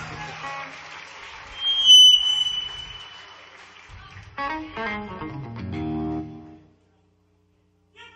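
Stray instrument sounds from a rock band's stage between songs: a short, bright high tone about two seconds in, then a couple of held chords in the middle. The sound cuts off to dead silence near the end.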